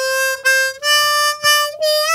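Country-tuned diatonic harmonica playing single notes of a second-position major melody: repeated draw-four notes, a step up to blow five, then a bent draw-five note released upward into its raised pitch. The draw five is tuned a half step higher than standard, which is what allows that bend.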